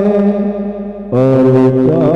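A congregation of men chanting an Urdu salaam to the Prophet together, with long held sung notes. A line trails off and a new phrase starts loudly about halfway through.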